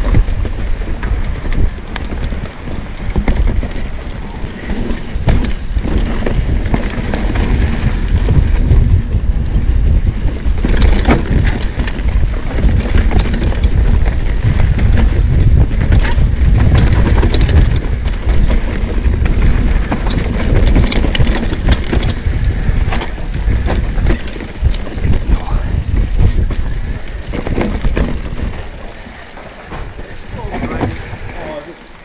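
Steel hardtail mountain bike ridden fast down a rough dirt forest trail, heard from a body-mounted action camera: a constant low rumble of tyres and wind on the microphone, with frequent clicks and rattles from the chain and frame over roots and bumps. It eases off near the end.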